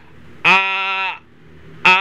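A man's voice holding one long, steady "aah" on a single pitch for under a second, starting about half a second in; a further vocalised "aha" begins near the end.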